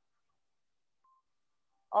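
Near silence: a pause in speech on a video-call recording, with one faint short blip about a second in. A voice begins right at the end.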